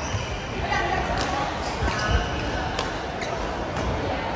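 Badminton rackets striking the shuttlecock in a doubles rally, sharp hits about once a second, in a reverberant sports hall. Voices and play from the surrounding courts run underneath.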